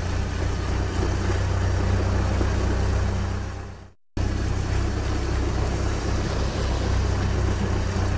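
Heavy-vehicle engine sound effect running steadily with a low hum. It fades out about halfway through to a brief moment of silence, then a similar engine sound starts again.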